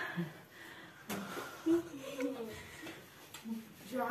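Soft, indistinct voices of girls talking quietly, with a light click about a second in.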